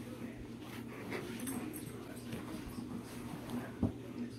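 Alaskan Malamute whining faintly over a steady low hum, with a single soft knock near the end.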